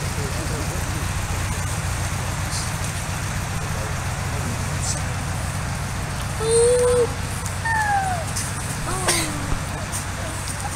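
VW Beetle's air-cooled flat-four engine running steadily at low revs under load as the car crawls up a muddy slope. A few short calls sound a couple of seconds after the midpoint, some falling in pitch.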